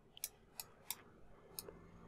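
A few faint mouse clicks, spaced irregularly, over near silence.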